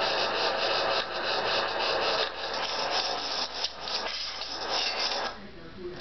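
Steady scraping, rasping noise of hands working on a push lawnmower. It stops about five seconds in.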